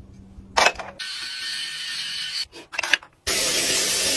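Small plastic clicks as a toothbrush is taken from a wall-mounted holder, with a short steady hiss between them. About three seconds in, water starts running from a bathroom faucet onto hands: a loud, steady splashing hiss.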